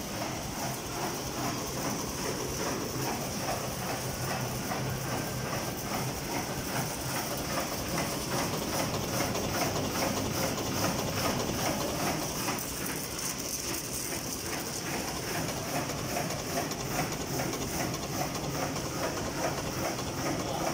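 Paper roll-to-sheet cutter running, its cross-cutting knife clacking in a fast, even rhythm of several strokes a second over the steady hum of the drive.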